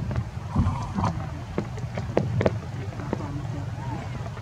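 Steady low rumble of wind on the microphone, with scattered short sharp clicks and a few faint high squeaky calls.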